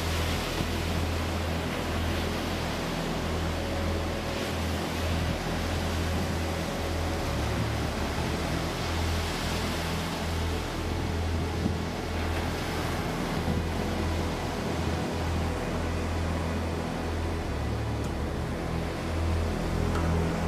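Ocean surf breaking and washing up a beach in a steady rush, with a low, uneven wind rumble on the microphone.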